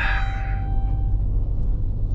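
A car's engine and its tyres rolling over gravel, a steady low rumble heard from inside the cabin. A brief ringing tone fades out within the first second.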